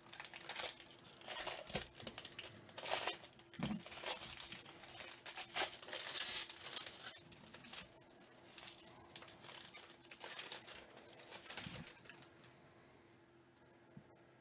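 Plastic wrapper of a Bowman Draft Super Jumbo trading-card pack crinkling and being torn open by hand, in irregular rustling bursts that die down near the end.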